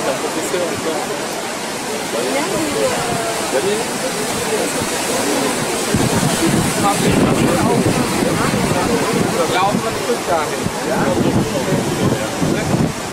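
Ocean surf breaking on rocks and shore with a steady rush, a little louder from about six seconds in, with people's voices talking throughout.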